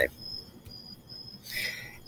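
Faint, high-pitched insect chirping in short repeated trills, with a soft click about a third of the way in.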